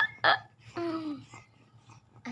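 Two quick hiccup-like catches of breath about a third of a second apart, followed by a short vocal sound falling in pitch.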